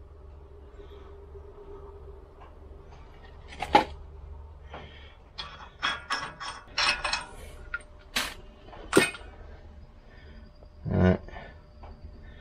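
Light clicks and taps of a small tin and its applicator against the wheel studs of a hub as compound is dabbed onto them. They are scattered over several seconds, with two sharper clicks past the middle, over a low steady hum.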